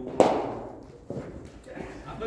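A single sharp crack of a cricket ball being struck, echoing through the indoor cricket hall, with a fainter knock about a second later.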